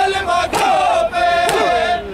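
A group of men chanting a noha in unison in long, drawn-out lines, with two sharp chest-beating (matam) strikes about a second apart keeping the beat.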